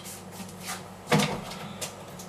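A kitchen cupboard door knocking shut about a second in, with a couple of lighter clicks around it.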